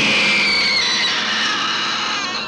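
A sudden, loud, dissonant horror-film sting: several high tones clash and slide downward together, then fade over the two seconds.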